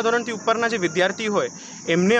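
A man speaking Gujarati into an interview microphone, pausing briefly near the end. A steady high-pitched hiss runs underneath throughout.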